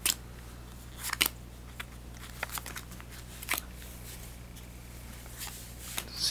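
Trading cards being handled and laid down: a few short, sharp flicks and snaps of card stock, spread irregularly, over a steady low hum.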